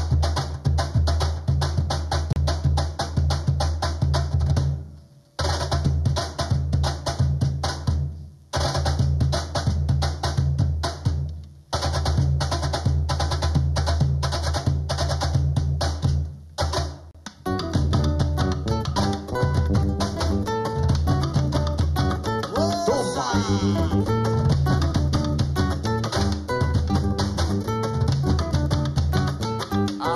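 A group of Peruvian cajones and other hand drums playing a fast rhythm with deep bass strokes, stopping together for brief breaks several times. Past the halfway point, melodic instruments join the drumming and it becomes a full band.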